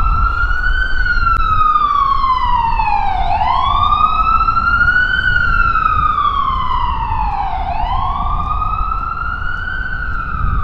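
Emergency vehicle siren in wail mode, its pitch rising and falling slowly in a cycle of about four seconds, with a low street rumble beneath.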